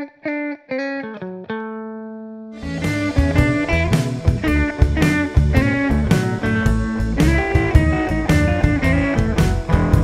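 Clean Telecaster-style electric guitar playing a blues lick with notes flicked off briefly rather than held, ending on one held, decaying note. About two and a half seconds in, a blues backing track with drums and bass comes in, and the guitar plays lead over it.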